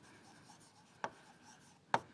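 Stylus writing on a tablet screen: a faint, soft scratching of strokes, with two short taps, one about a second in and one near the end.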